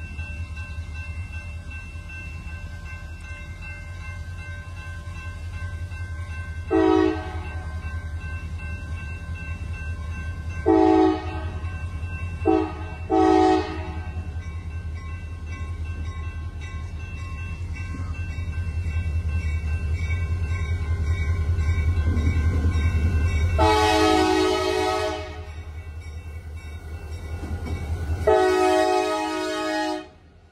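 CSX diesel freight locomotive approaching, its engine rumble growing steadily louder as it nears. It sounds its air horn in the grade-crossing pattern, two blasts, a short toot and another blast, about seven seconds in, then two longer blasts near the end as it comes alongside.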